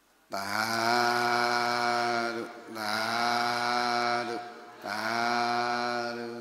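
A man's voice chanting three long, drawn-out held notes on a steady pitch, each about two seconds, with short breaths between.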